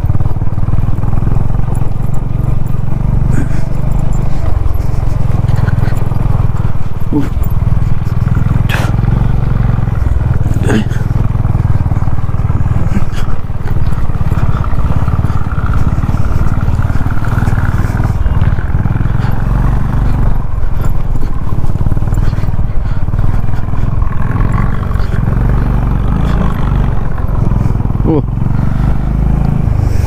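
Motorcycle engine running while riding a dirt track, under a loud, steady low rumble of wind on the microphone, with a few short knocks from the rough ground.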